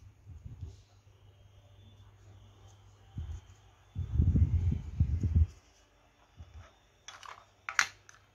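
Low, dull rumbling handling noise as the hand holding the recording phone shifts while turning a small hard-plastic toy figure. Near the end come a few light clicks of the plastic figure being set down on a glass shelf.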